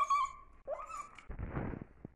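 Puppy giving a short high whine, then a second whine that rises in pitch just before a second in, followed by a short rustling noise.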